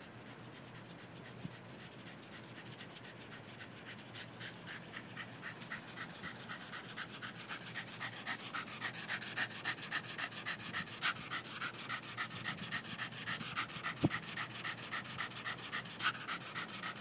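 West Highland White Terrier panting hard in quick, even breaths, growing louder as it comes closer. It is winded after about twenty minutes of non-stop fetch. A single sharp click sounds near the end.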